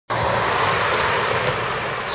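Steady road traffic noise: passing cars running along the road, an even rushing sound with a low hum underneath.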